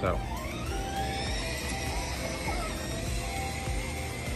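Electric drive motors of a kids' battery ride-on car whining as it pulls away under remote control: the whine rises over about the first two seconds and then holds steady. Background music plays under it.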